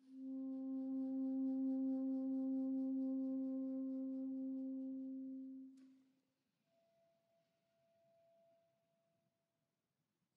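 Soprano saxophone holding one long, steady low note for about six seconds. After a short click, it plays a much softer, higher note held for about three seconds.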